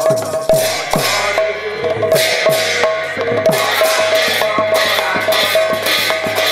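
Pala ensemble playing without singing: a barrel drum (mridanga) keeps a fast rhythm with bass strokes that fall in pitch, and large brass hand cymbals clash on the beat, growing louder from about two seconds in.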